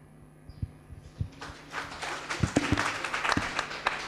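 Audience applauding: a few scattered claps at first, building into steady clapping from a whole room about a second and a half in.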